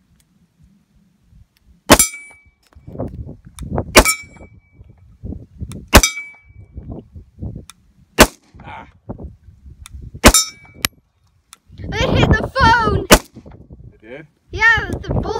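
Sig P320 pistol fired about six times at a slow, steady pace, most shots about two seconds apart. Most of the shots are followed by a short metallic ring: the steel plate target being hit.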